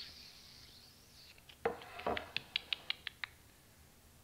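A wooden end-grain cutting board being set down on a wooden workbench: two dull knocks about a second and a half and two seconds in, then a quick run of about eight light clicks lasting about a second.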